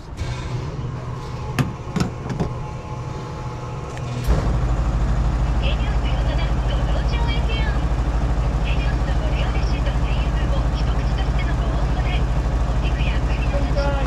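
Self-service petrol pump dispensing fuel through the nozzle into a car's tank: after a few clicks from the nozzle being handled, the pump starts about four seconds in and runs on as a steady, loud, fast-pulsing low hum.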